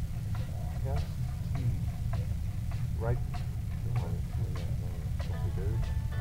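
Steady low rumble, with brief talking over it.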